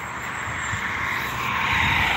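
A small SUV approaching along the road, its tyre and road noise growing steadily louder as it draws near.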